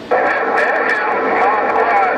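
Incoming voice transmission over a President HR2510 radio's speaker on the 11-meter CB band, a distant skip signal that sounds thin, tinny and unintelligible through the noise. It cuts in suddenly right at the start, with a faint steady tone underneath the wavering voice.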